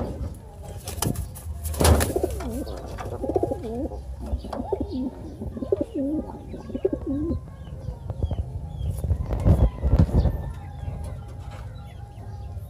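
Domestic pigeons cooing, a rolling run of wavering coos from about two to seven seconds in. A few dull thumps stand out, the loudest just before the cooing begins and again near ten seconds in.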